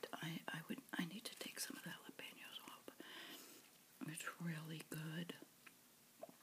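A woman whispering softly, then a hummed "mm" lasting about a second, with small clicks in between.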